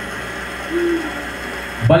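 A pause in a man's talk through a handheld microphone. A steady background hum carries on, with a short hummed 'mm' from the speaker just under a second in, and his speech starts again near the end.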